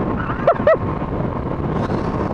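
Steady wind rushing over an action camera's microphone on a motorcycle riding at road speed, with the bike's running and road noise underneath. Two brief vocal sounds from the rider about half a second in.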